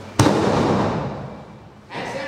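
A wrestler taking a back bump onto a wrestling ring: one loud crash as the body lands flat on the canvas-covered boards, which boom and ring out, fading over about a second and a half.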